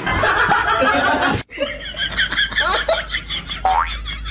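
Laughter from several people, broken off suddenly about one and a half seconds in and then starting up again.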